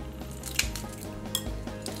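Eggshell of a hard-boiled egg crackling and clicking as it is peeled off by hand, a few sharp clicks, the shell coming away easily.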